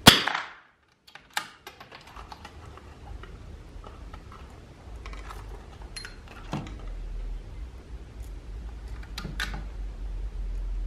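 A single .22 LR rifle shot at the very start, a sharp crack dying away within about half a second. Then scattered small metallic clicks and clacks as the bolt is worked and a fresh cartridge is taken from the box and chambered, with a dull thump in the middle and a last cluster of clicks near the end.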